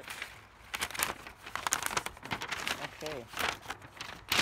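Paper leaflet rustling and crinkling as it is handled and folded, in a quick run of irregular crackles that stops about three seconds in.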